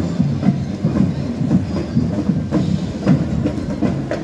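Parade drums playing a steady marching beat, about two strikes a second.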